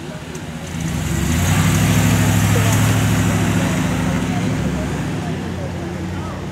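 A car driving past close by on the street, its engine and tyre noise swelling about a second in, loudest around two to three seconds in, then fading away.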